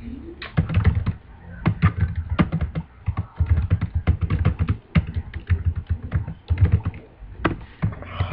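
Typing on a computer keyboard: quick, uneven runs of key clicks with short pauses, as a line of text is entered.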